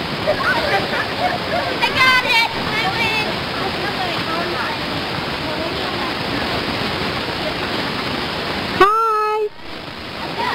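A steady rushing noise with faint children's voices in the first few seconds. Near the end a child gives a short, high-pitched shout, and right after it the sound drops off suddenly.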